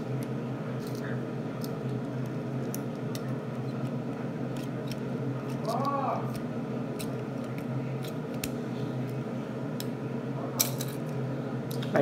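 Scattered small plastic clicks and taps as a small plastic toy race car is handled and moved on a tabletop, over a steady low hum. A brief vocal sound comes about halfway through.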